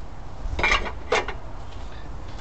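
A couple of short, light clinks of hard painting gear, the lids and spray cans, being handled on the work table.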